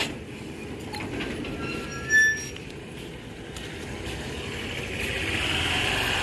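Low steady outdoor rumble, with a brief high-pitched squeak about two seconds in.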